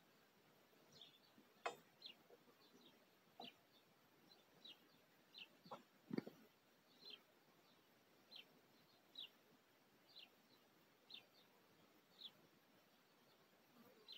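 Faint small-bird chirps, short high notes sliding down in pitch, repeating about once or twice a second, with a few soft knocks, the strongest about six seconds in.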